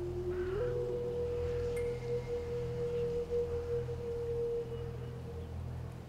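Background film score: a single clear note held for several seconds over a low steady drone. The note steps up in pitch about half a second in and fades out near the end.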